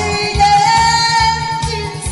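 A woman singing a Korean pumba song through a headset microphone and PA over a backing track with a steady beat, holding one long note through the middle.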